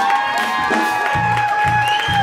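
Saxophone solo: one long high note held steady over a funk-jazz band, with electric bass notes pulsing underneath.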